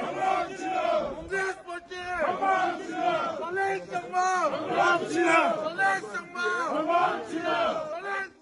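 A crowd shouting and cheering, many voices overlapping loudly in rising and falling shouts.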